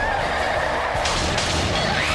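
Animated-film soundtrack: background music, joined about a second in by a sudden hissing burst, a sound effect as snow blasts apart.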